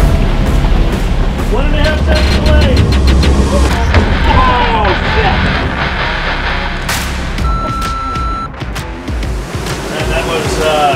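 Shouted voices over the steady low rumble of a sportfishing boat's engines and churning water, with music underneath. A short steady beep sounds about three-quarters of the way through.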